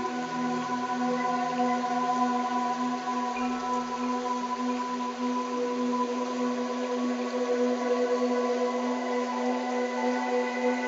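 Electronic brainwave-entrainment tones: a monaural beat and isochronic tone built on a 396 Hz base with a 15 Hz beat, heard as a steady droning tone with a fast pulse. Fainter higher tones hold steady above it, some fading slowly in and out.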